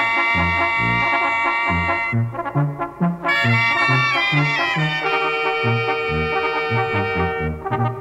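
Sinaloan-style banda playing an instrumental: trumpets and trombones hold chords over a tuba bass line that steps from note to note. The horns briefly thin out about two seconds in.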